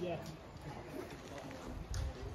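A short spoken "yeah", then open-air ambience with a bird cooing faintly and a soft knock near the end.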